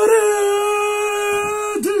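A man's voice holding one long, steady high note for nearly two seconds, breaking off briefly near the end before a second held note begins.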